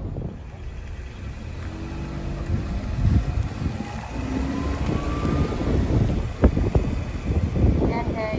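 A car driving by on a concrete quay, its engine note rising near the middle, with wind buffeting the microphone throughout.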